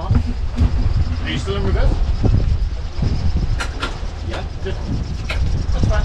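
Sailing yacht's inboard engine running steadily in reverse gear, a low rumble, with a few sharp knocks in the middle.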